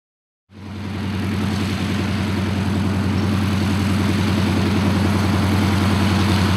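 The nine-cylinder Pratt & Whitney R-985 Wasp Junior radial engine and propeller of a de Havilland Canada DHC-2 Beaver running at low power while the aircraft taxis. The sound fades in about half a second in, then runs steadily with an even pulsing throb.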